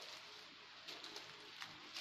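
Quiet room tone with a faint, low bird call, and a few soft clicks scattered through it.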